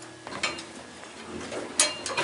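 Controls of a 1972 Dover service elevator: a couple of soft mechanical clicks about half a second in, then a sharper click near the end, as the car is sent back down to the first floor.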